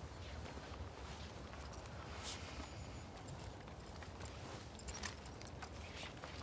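Quiet outdoor ambience with a steady low rumble, a few faint clicks and rustles, and a brief soft hiss about two seconds in.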